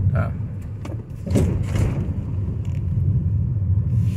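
Car interior road and engine rumble while driving, heard from inside the cabin, steady and low, with a brief louder rush about a second and a half in.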